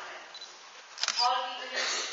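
Quiet hall room tone with scattered low talk from the audience and a single sharp click about a second in.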